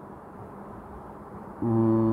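Faint steady room hiss, then near the end a voice holds a low hesitation sound on one unchanging pitch for under a second.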